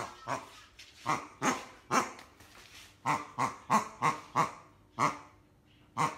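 Rubber pig squeaky toy squeezed again and again, about ten short sounds, with a quick run of them about three seconds in.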